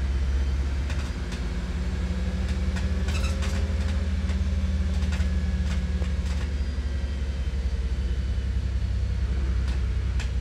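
Wright Gemini DAF DB250 double-decker diesel bus heard from inside the saloon while on the move: a steady low drone from the engine and drivetrain. A held engine note sits on top of the drone for a few seconds and fades out a little past the middle. A few sharp clicks come in between.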